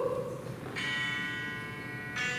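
A pitch pipe sounding a single steady, reedy note, held for just over a second, giving an a cappella group its starting pitch. A brief falling vocal whoop is heard at the very start.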